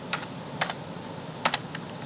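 A few separate keystrokes on a computer keyboard, about five sharp taps spaced unevenly, while a Chinese character is typed in.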